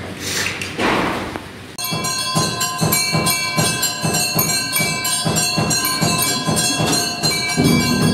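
Temple bells ringing together with drum strokes in a steady rhythm, about three strokes a second, starting abruptly about two seconds in.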